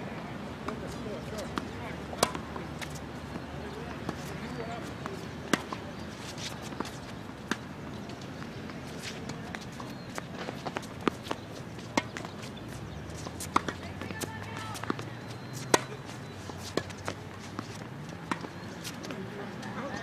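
Tennis rallies on a hard court: sharp pops of racquets striking the ball and the ball bouncing, at irregular intervals a second or more apart. Fainter clicks and scuffs of footsteps come in between.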